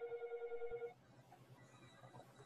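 A phone ringing: one warbling ring of about a second, cutting off just under a second in.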